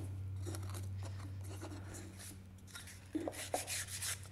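Soft rubbing and scraping as a pine board's freshly routed tongue is cleaned up by hand with sandpaper, with a couple of light knocks of the wood being handled near the end. A steady low hum runs underneath, slowly fading.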